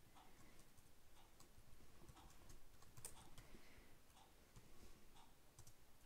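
Faint, irregular keystrokes on a computer keyboard as code is typed.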